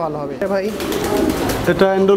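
Domestic fancy pigeons cooing in a loft cage, with a man's voice.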